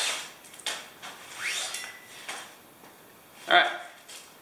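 Ridgeline cord being pulled hand over hand through a carabiner: several quick swishes of cord rubbing over the metal and along the line, each rising in pitch as the pull speeds up, with a few light clicks.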